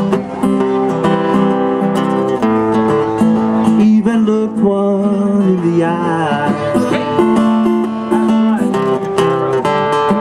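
Steel-string acoustic guitar strummed live in a steady rhythm, playing the chords of a folk song.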